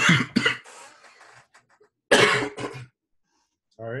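Coughing: two sharp coughs right at the start, then another bout about two seconds in.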